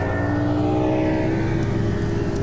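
Motorboat engine running at high revs, its pitch held nearly steady after revving up, over a steady deep hum.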